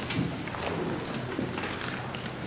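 Faint church room sound during communion distribution: low murmured voices, small scattered clicks and shuffles, over a faint steady hum.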